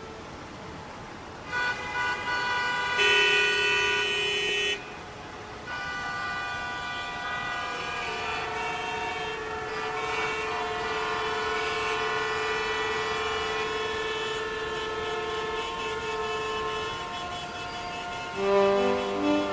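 Vehicle horns honking in street traffic: several steady horn tones overlap. A loud blast sounds from about three seconds in to nearly five, and one horn is held for about nine seconds from eight seconds in.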